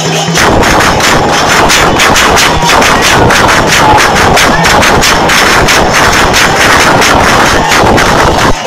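A dense, loud run of sharp bangs, many a second and unbroken, over a crowd's noise.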